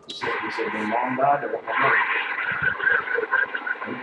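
A voice coming over a CB radio's speaker: a received transmission, thin and hard to make out, starting abruptly with a short burst.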